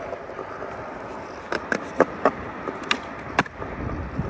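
Skateboard wheels rolling on smooth concrete, with a series of sharp wooden clacks from the board striking the ground about halfway through.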